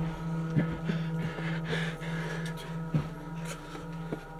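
Background music holding a low, steady drone with sustained tones. Two sharp knocks fall over it, about half a second in and again about three seconds in, and there are a few short hissy noises between them.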